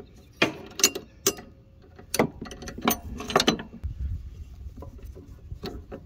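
Socket ratchet and closed-end wrench on the 15 mm bolt of a riding-mower deck idler pulley, loosening it: a run of irregular sharp metallic clicks and clinks.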